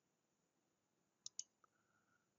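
Two quick computer-mouse button clicks about a second and a quarter in, with a fainter tick just after, against near silence.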